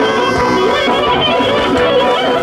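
Loud traditional folk music played live: a wind instrument carries the melody over a steady drum beat.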